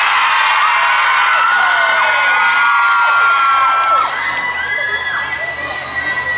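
Audience cheering and screaming, many high-pitched voices at once, easing off somewhat about four seconds in.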